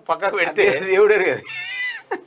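Man talking, then near the end a short, high-pitched squeal-like vocal sound as the men begin to laugh.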